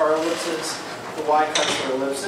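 A man speaking in short, indistinct phrases, pausing briefly in the middle.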